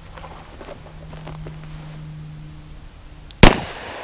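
A single shot from a Smith & Wesson Model 637 snub-nosed .38 Special revolver firing Corbon .38 Special +P 110-grain hollow points, about three and a half seconds in, with a short echo trailing off after the bang.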